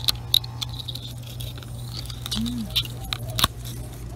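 Light rustling and scattered small clicks from the hand-held camera moving through katuk plants and dry fallen leaves, over a steady low hum; a short murmured 'ừ' a little past halfway.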